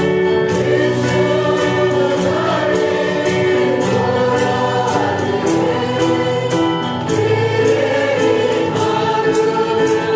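Choir singing gospel-style Christian music, with a steady beat ticking about twice a second.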